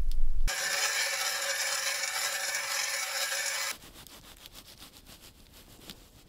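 A loud steady scraping sound lasting about three seconds, then a run of quieter short scraping strokes, fitting a knife blade scraped along a fish.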